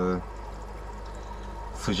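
Steady bubbling and trickling of aquarium water from aeration, air bubbles breaking at the surface, over a low steady hum.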